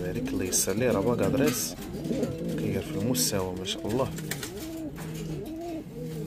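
Domestic pigeon cooing: a run of repeated low coos, one after another.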